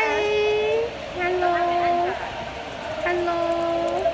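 Young women's voices calling out in three long, level-pitched notes of about a second each, with short pauses between them.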